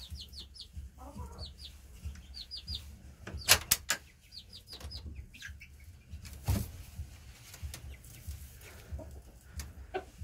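Chickens giving soft, high clucks in short runs of three or four notes, several times. A few sharp wooden knocks and clicks come from a slatted coop door and its latch being handled, the loudest a little past three and a half seconds in.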